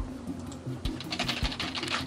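Typing on a computer keyboard: a quick run of key clicks, thickest in the second half.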